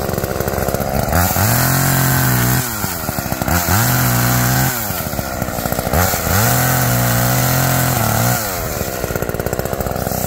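Homelite two-stroke chainsaw engine idling and being revved up three times, each rev held for a second or two before it drops back to idle.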